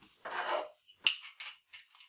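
A Tokarev TT pistol being handled in gloved hands: a short scrape, then a sharp metallic click about a second in, followed by a few lighter clicks.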